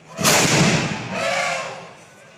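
A ceremonial wheeled cannon fires one loud shot about a quarter second in. The boom sustains briefly, then swells again more softly before dying away.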